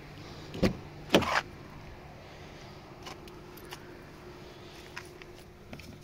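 BMW 320d front door latch opening: two sharp clicks about half a second apart, the second louder, as the handle is pulled and the door comes open. A few faint ticks follow.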